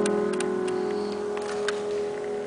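A sustained piano chord slowly dying away, with a few light, sharp clicks over it; a new chord comes in just after.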